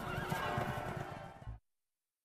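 A horse whinnying over a fading soundtrack bed, ending in a short low thump and then dead silence about one and a half seconds in.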